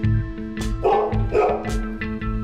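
Two short animal calls, about half a second apart, over background music with a steady bass line.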